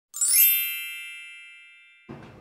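A bright, shimmering chime: a quick upward run of many high ringing tones that swells within the first half second, then rings on and fades away slowly.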